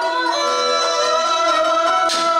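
Khmer Basak theatre music: a bowed fiddle plays held notes with slight slides between them, over an ensemble with plucked strings.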